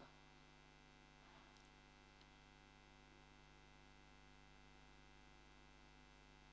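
Near silence: only a faint, steady electrical mains hum.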